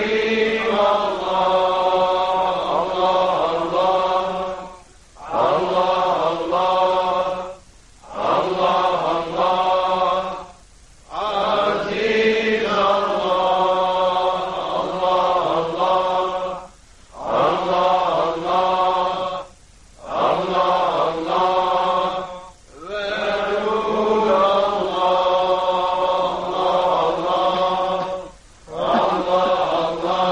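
Sufi zikr chant: a voice intoning long, held phrases of the divine name, each a few seconds long and separated by brief pauses for breath.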